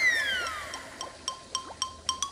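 Comic background-score sound effect: a whistle-like tone that swoops up and then slides slowly down over about a second, followed by light, quick clicking percussion.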